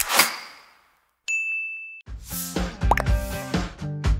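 Intro sound effects: a short sweep fading away, a brief pause, then a bright single ding lasting under a second, followed by background music starting about two seconds in.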